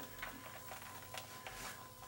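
Faint handling sounds of a single-action revolver being lifted in a stiff new leather holster, with a few light ticks and leather rubbing.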